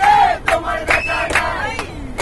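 A group of people singing together loudly, with hand clapping keeping the beat at about two to three claps a second.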